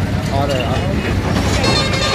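Chatter from a crowd over a steady low engine rumble, with a vehicle horn sounding near the end.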